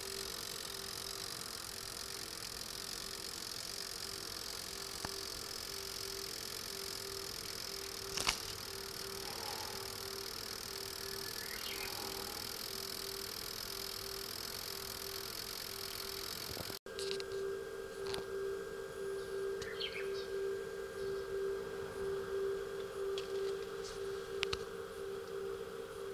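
Steady electrical hum with a pulsing low tone, the electric-sounding noise of the car's electrical system running while it powers a plug-in appliance. There is one sharp click about eight seconds in. After an edit about two-thirds of the way through, the hum is louder and a thin, higher whine joins it.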